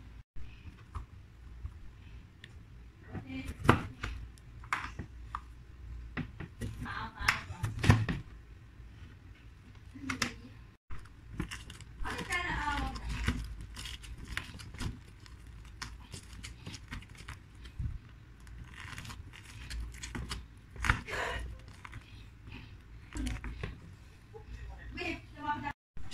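Lemon halves being pressed and twisted by hand on a plastic citrus reamer, with irregular knocks, clatter and scraping of the plastic juicer and lemons.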